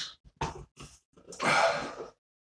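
Two faint clicks, then a short breathy exhale from a man starting a little past halfway.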